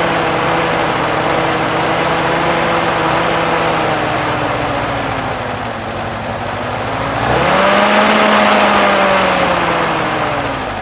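M38A1 Jeep's F-head four-cylinder engine running at a fast idle that slowly sags, then is revved up sharply about seven seconds in, held, and eased back down near the end. It is running for the first time after long storage, off a temporary fuel feed, with a carburetor that the owner says needs cleaning.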